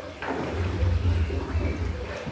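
Water sloshing and dripping as boiled potatoes are scooped out of their cooking pot with a ladle into a plastic bowl, starting a moment in, over a low rumble.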